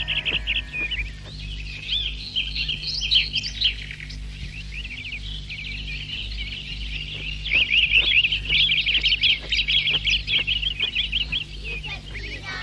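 Birds chirping in quick, rapid runs of high notes, thickest in the second half, over a faint steady low hum.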